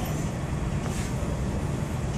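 Steady low rumble of indoor ice-arena background noise, with no distinct events.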